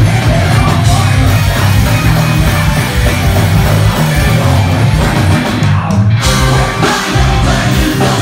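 Live heavy metal band playing full out: electric guitars, drums and keyboards over sung vocals through a stage PA.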